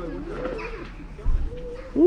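A bird calling low, with a dull low thump a little past halfway through.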